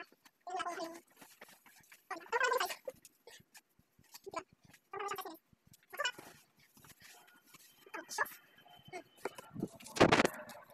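A woman's voice in short vocal bursts with pauses between, and small clicks and handling noises in the gaps. A loud bump comes at the very end as a hand grabs the camera.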